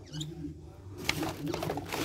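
Quiet handling noise: a few light clicks and rustles as tools are rummaged in a bag, under a faint, low murmur of voice.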